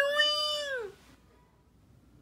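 A person's high-pitched, squeaky character voice holding a long "hmmm", which falls in pitch and ends about a second in; faint room noise follows.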